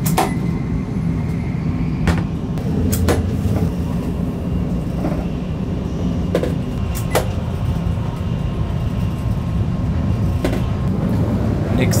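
Steady low rumble of a Shinkansen bullet train running, heard from inside the carriage. A handful of short sharp clicks and knocks sound over it, the first as the toilet cubicle's door lock is worked.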